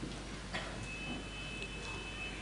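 A faint, steady high-pitched tone, two pitches held together, starting a little under a second in, over quiet hall noise, with a soft click about half a second in.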